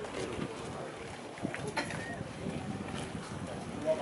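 Boots of a marching squad on asphalt, a dense, uneven patter of footfalls, with faint voices.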